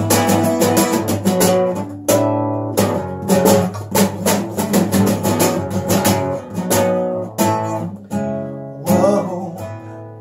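Nylon-string classical guitar strummed in quick repeated chord strokes, with a couple of brief breaks in the strumming.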